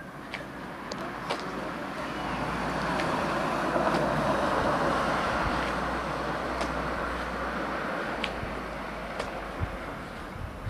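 A road vehicle passing: a rushing noise with a low rumble under it swells over a couple of seconds, peaks in the middle and fades away. A few short, sharp clicks are scattered through it.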